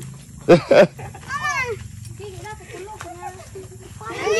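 Pit bull barking twice, two short, loud, sharp barks in quick succession about half a second in, with children's voices around it.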